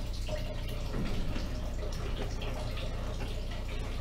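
Water running steadily from a sink tap into a bowl as it fills.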